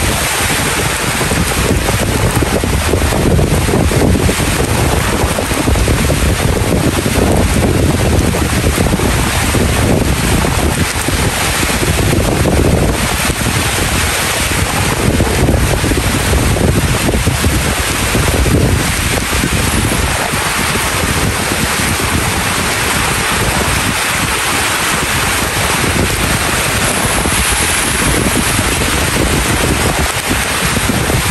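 Steady rain falling, with wind gusting across the microphone in a low rumble that eases somewhat after about twenty seconds.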